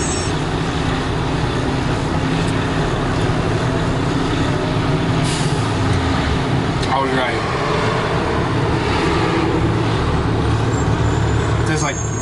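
Steady low outdoor rumble throughout, with a short vocal sound about seven seconds in.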